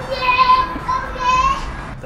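A young girl's voice making two long, high-pitched held calls, the second shorter than the first.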